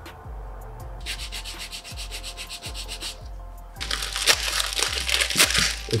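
Scratchy rubbing from about a second in, then louder crinkling of a plastic wrapper being torn open over the last two seconds.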